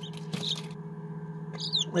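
Young chicks peeping: a few short high peeps that fall in pitch, one about half a second in and a quick cluster near the end, over a steady low hum.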